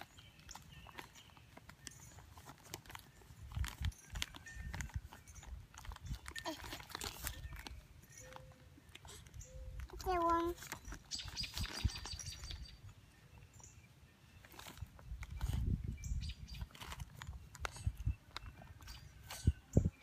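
A paper seed packet crinkling and rustling in a small child's hands, with scattered small clicks and a few low rumbles. A short voice sound comes about halfway through.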